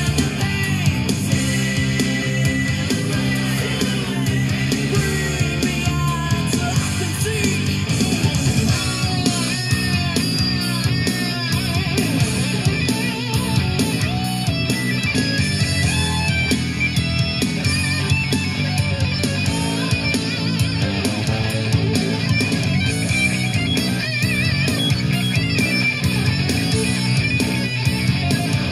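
Hard rock song playing from a CD on a portable stereo, loud and steady, with electric guitar over bass and drums.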